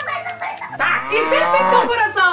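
A cow mooing once, a long call that rises and then falls, used as a comic sound effect over light background music. A short bit of a woman's voice comes just before it.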